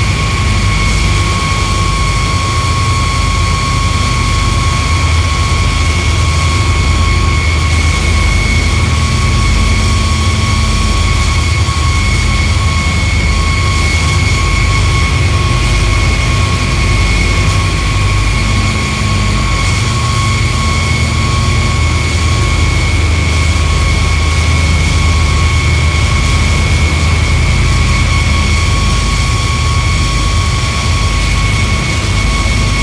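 Power-electronics noise drone: a loud, unbroken wall of rumbling noise with a steady high whine held over it.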